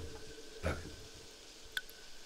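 A quiet pause in a reading: one short spoken word, "Tak", over low room tone with a faint steady hum, and a brief click near the end.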